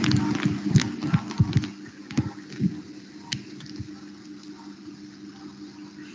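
A quick run of sharp clicks and knocks for about two seconds, then a few scattered clicks, over a steady low hum.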